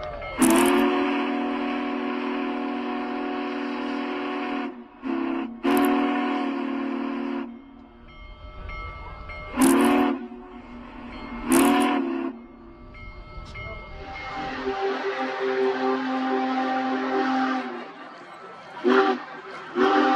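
Union Pacific Big Boy 4014's steam whistle blowing a chord of several tones: one long blast of about seven seconds with a brief break partway, then two short blasts. From about two-thirds of the way in, a steady rushing noise with tones under it takes over.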